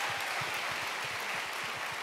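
Large audience applauding: an even rush of many hand claps that eases off slightly toward the end.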